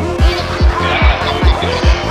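Psychedelic trance: a steady four-on-the-floor kick drum, about two beats a second, with a rolling bassline between the kicks and high synth sounds that glide in pitch.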